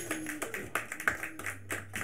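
Scattered applause from a small audience, a few hands clapping unevenly, while the last note of the band fades out.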